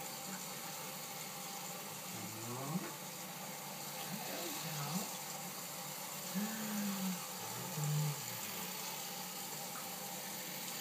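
Steady rush of a tap running into a bathroom sink, with a man's low hums or murmurs four times over it.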